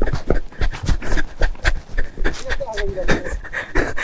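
A motorcycle rider panting hard right at a helmet-mounted microphone, in quick uneven breaths, with a short voiced groan about two and a half seconds in.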